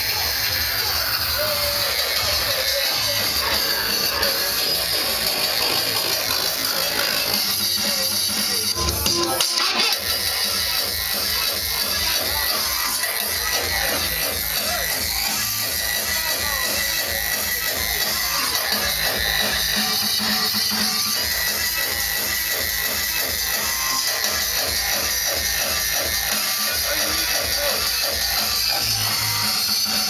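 Hardcore techno mixed by a DJ over a club sound system: a fast, steady kick drum under noisy electronic sounds, the kick dropping out for a moment about ten seconds in.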